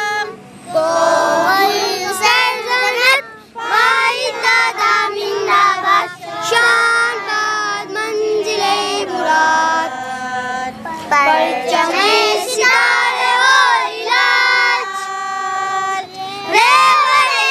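Children singing together in chorus, with women's voices among them, a Pakistani patriotic song (milli naghma).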